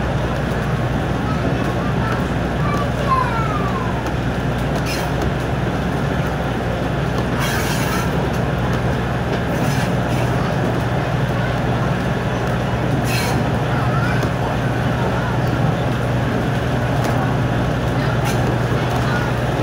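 Steady rumble of a heritage railway carriage running along the track, heard through an open window, with a few brief sharp clicks.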